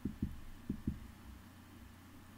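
Computer mouse clicking twice, each click a quick pair of dull low thumps, the two clicks about half a second apart, over a faint steady hum.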